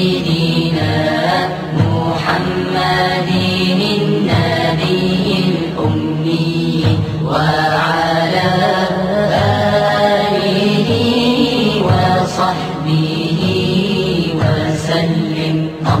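Arabic devotional chant (nasheed), with voices singing long, held, ornamented notes over a steady low drone.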